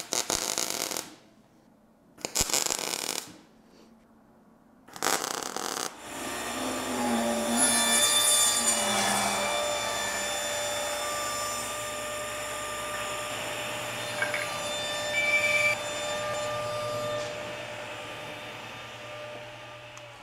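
Three short bursts of arc welding, each about a second long. Then a table saw runs steadily and cuts a piece of wood, winding down near the end.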